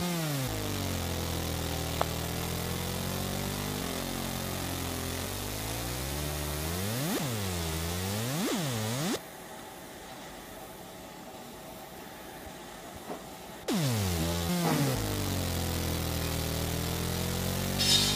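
50W fiber laser marking machine deep-engraving copper: a pitched buzz that repeatedly glides down and back up in pitch as the laser works across the plate. It drops quieter for a few seconds in the middle and picks up again, with a short hiss near the end.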